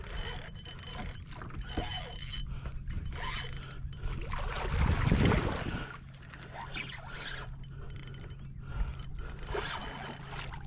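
Fishing reel and rod being worked while fighting a hooked snook from a kayak: mechanical clicking and turning, with water splashing as the fish thrashes at the surface. A louder rush of noise comes about halfway through.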